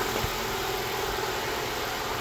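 Honda D17 1.7-litre four-cylinder engine idling steadily, running on a newly fitted crankshaft position sensor.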